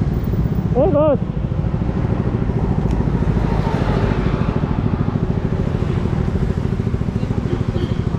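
Motorcycle engine idling close to the microphone, a steady low rumble with a fast, even pulse. A short voice call about a second in.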